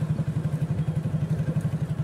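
Motorcycle engine running steadily at low road speed, a fast even low pulsing close by.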